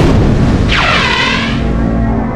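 A boom sound effect hits at the start and trails off, followed by a sweeping tone that rises and falls, over dark background music.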